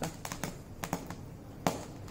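Grain popping into lahya in a hot steel pan covered with a cloth: scattered sharp pops at irregular intervals, the loudest one near the end.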